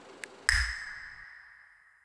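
Film-leader countdown sound effect: two light ticks, then about half a second in a sharp hit with a high ringing ping that fades out over about a second and a half.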